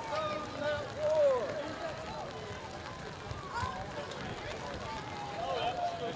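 Indistinct voices of parade marchers and onlookers talking and calling out, over a steady background hiss.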